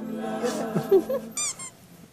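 A few quick, high squeaky chirps in rapid succession, each rising and falling in pitch, about halfway through: a cartoon-style comic sound effect.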